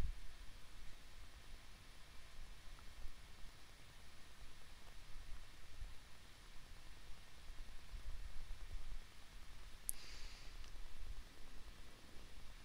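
Quiet small-room tone with a faint low hum, broken by a single sharp click just before ten seconds in, followed by a brief soft hiss.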